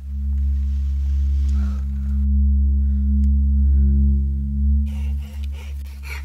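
A deep, steady ominous drone of several low tones held together, like a horror-film score. It starts suddenly, swells slightly midway and eases off near the end.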